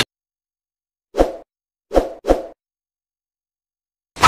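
Three short sound effects from an animated subscribe-button end screen: one about a second in, then two in quick succession near the two-second mark, each dying away quickly.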